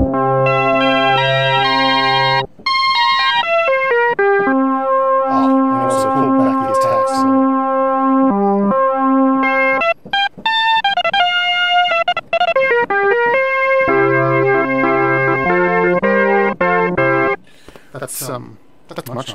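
Roland Boutique JU-06 synthesizer playing one of its preset patches from the keyboard: held chords over lower bass notes, changing every second or so, with a few short breaks between phrases.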